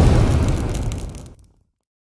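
Explosion sound effect: a deep blast dying away and ending about one and a half seconds in.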